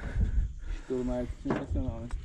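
A man's voice in two short, unclear utterances over a low steady rumble.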